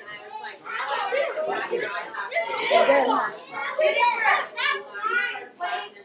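Children's voices talking and calling out over one another, with no words standing out clearly.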